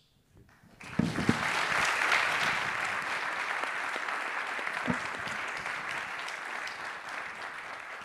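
An audience applauding in a hall. The clapping starts about a second in and slowly dies down.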